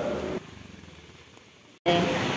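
Faint street traffic with a vehicle engine running, fading away over about a second and a half and then cutting off abruptly.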